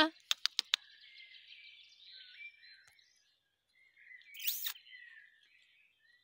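Birds chirping faintly in the background, with one louder, rising chirp about four and a half seconds in. A few sharp clicks come just after the start.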